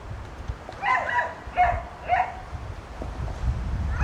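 A dog barking: several short, fairly high barks in quick succession during the first half.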